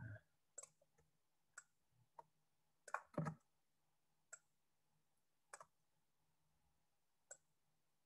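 Faint, irregularly spaced clicks, about a dozen in all and loudest in a cluster about three seconds in, from input clicks while drawing arrows on a computer screen, over near silence.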